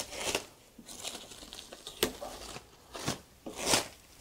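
White plastic packing wrap crinkling and rustling as it is pulled open and off a boxed unit, in several irregular bursts, the loudest near the end.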